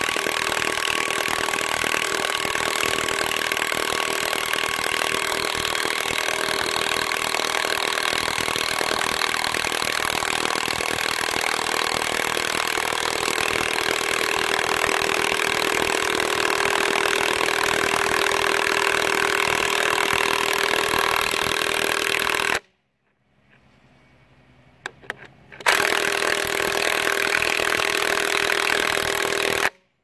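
Porter-Cable 20-volt half-inch cordless impact wrench driving a long lag screw into a wooden beam. It runs continuously for about twenty seconds and stops abruptly. After a pause of about three seconds, a final burst of about four seconds drives the screw head down to the wood and cuts off sharply.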